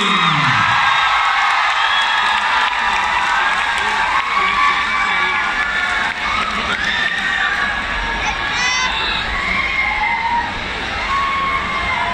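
A large crowd cheering and shouting for a singing-contest winner, many high voices calling and whooping over one another in a steady din.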